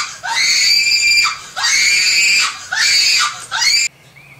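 A man screaming in a very high falsetto in mock panic: about four long shrieks in a row, each swooping up sharply in pitch and then held.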